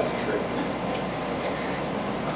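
A few faint, irregular ticks or clicks over steady room noise.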